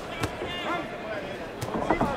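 Boxing ring sound: shouting from the crowd and corners over arena noise, with two sharp smacks of boxing gloves landing, one just after the start and one about a second and a half in.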